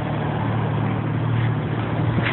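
A steady low mechanical drone, like a motor running, under a haze of background noise.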